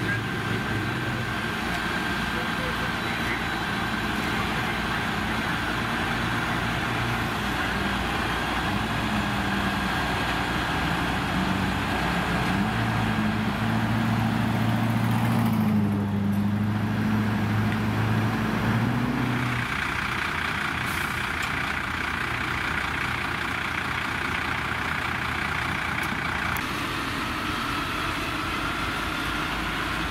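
Fire engines' diesel engines running at a fire scene. About halfway through, one engine's note climbs and grows louder for several seconds, then drops back abruptly.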